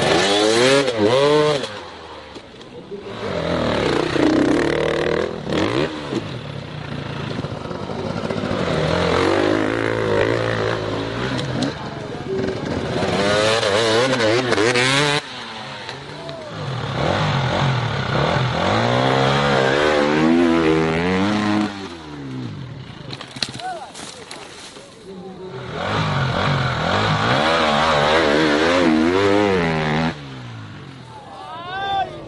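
Enduro dirt bike engines revving hard and dropping back, again and again, the pitch sweeping up and down. There are brief lulls a couple of seconds in and again about two-thirds through.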